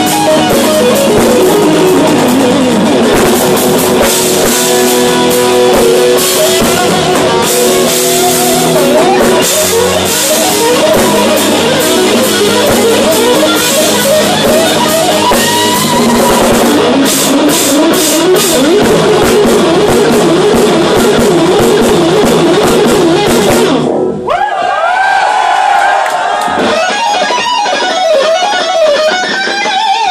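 A live instrumental rock band playing: electric guitar lead lines over bass guitar and a drum kit. About 24 s in, the drums and bass cut out and the guitar carries on nearly alone with bending, wavering notes, until the full band comes back in near the end.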